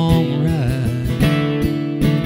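Two acoustic guitars strumming a steady country rhythm, about four strums a second.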